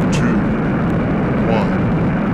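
Space Shuttle's three main engines running on the launch pad seconds after ignition, a loud steady rush of noise, the last seconds before liftoff. A countdown voice is faintly audible over it.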